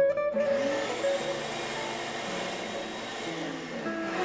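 Shop vac used as a blower, starting up just after the beginning and pushing a steady rush of air through its hose into a plastic vacuum bag to open the bag up.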